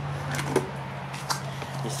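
A steady low hum with two or three faint, soft clicks.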